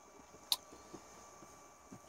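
Faint room tone with one sharp click about half a second in, followed by a couple of much softer ticks.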